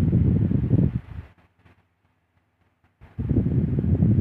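Air from a small Meirao desk fan blowing onto the microphone: a low wind rumble on the mic. It cuts out about a second in and comes back near the end.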